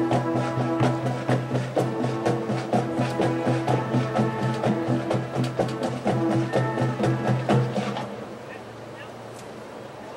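Marching band of brass, woodwinds and percussion playing sustained chords with regular accented beats; the music stops about eight seconds in, leaving only quieter background noise.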